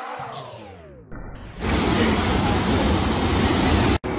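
A pitched musical sound slides steadily downward in pitch and fades during the first second. About one and a half seconds in it gives way to the loud, steady rush of water from a FlowRider surf-simulator wave.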